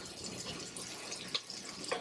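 Faint sizzling of arborio rice and shallots toasting in olive oil and butter as they are stirred with a wooden spoon, with a light tick of the spoon about a second and a half in.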